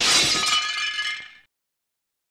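Intro sound effect: a sudden bright crash with high ringing tones, fading out within about a second and a half.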